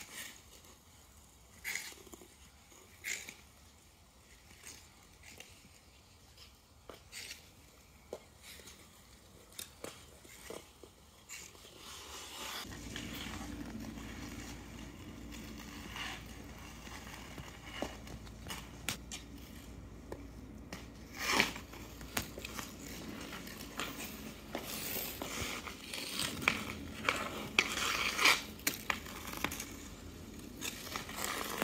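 Skate blades scraping and knocking on rink ice, sparse at first. From about halfway a steady low rumble comes in, with sharp clacks of hockey sticks hitting the ice and puck, loudest and most frequent near the end.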